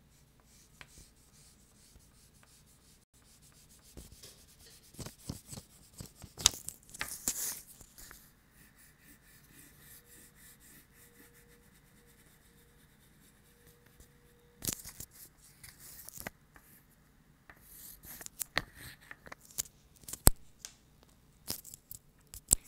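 Oil pastel rubbing across paper in irregular runs of short, quick scratchy strokes, with quieter pauses between runs. One sharp tap comes near the end.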